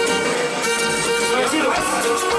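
Live Latin dance band playing, with long held notes.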